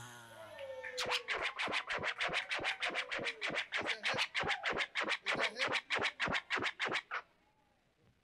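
A DJ scratching a record on turntables: a fast, even run of short scratch strokes, about five a second, starting about a second in and cutting off suddenly near the end.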